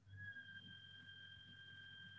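Near silence, with a faint steady high-pitched tone and a low hum underneath.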